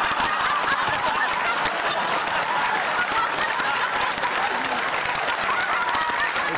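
Studio audience laughing and clapping, a thick wash of applause with many voices whooping through it.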